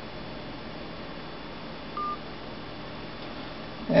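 A single short telephone beep, one brief steady tone about two seconds in, over faint room hiss.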